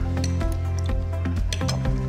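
Background music: sustained notes over a steady bass line.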